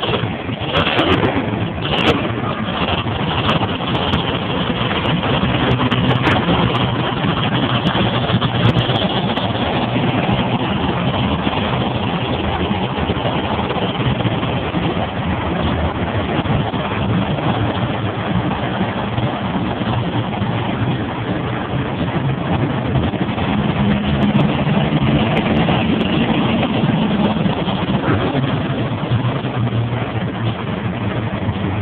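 Several monster trucks' big supercharged V8 engines running loud and steady as the trucks roll past at low speed, with a few sharp clicks in the first two seconds. Near the end one engine's deeper note swells for a few seconds.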